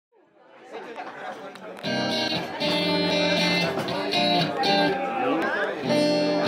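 A live acoustic guitar being played, with a man's voice singing along, fading in from silence over the first two seconds.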